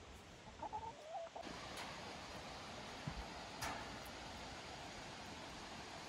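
Backyard chickens clucking faintly, with a few short calls about a second in, then a faint steady background.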